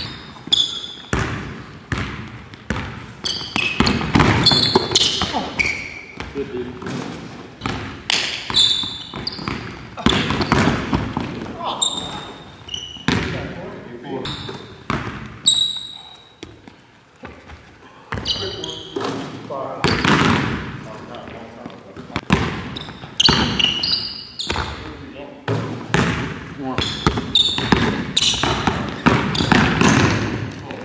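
A basketball being dribbled on a hardwood gym floor, with repeated sharp bounces that echo in the hall. Short high sneaker squeaks sound in between.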